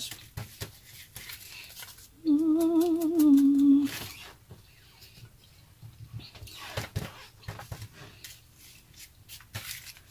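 A woman hums a short wavering note for about two seconds, starting just after two seconds in; it is the loudest sound. Around it, soft rustling and crinkling of paper as a painted paper cutout is handled and rubbed with the fingers.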